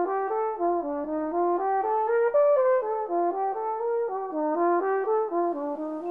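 Solo brass instrument, unaccompanied, playing a flowing melody of short notes that step up and down at about three notes a second.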